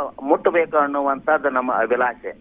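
Speech only: a man talking over a telephone line, thin-sounding with no highs.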